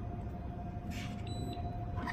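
Steady low machine hum with a faint steady whine running through it, and a soft click about a second in.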